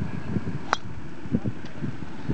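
A golf club striking a ball off the tee: one sharp crack about three-quarters of a second in, over steady wind noise on the microphone.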